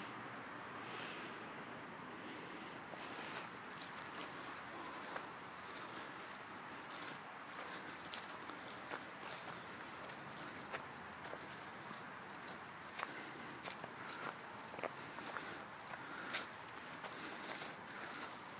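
Steady high-pitched insect chorus. Scattered crunches and rustles of footsteps through brush and leaf litter come in from a few seconds in, with one louder crack near the end.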